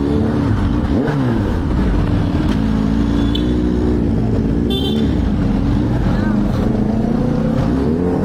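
Motorcycle engine running at low revs, its pitch rising and falling gently as the bike creeps along. A short high beep sounds about four and a half seconds in.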